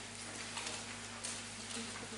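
Faint room tone through the pulpit microphone's sound system: a steady low electrical hum and hiss, with a few faint light clicks.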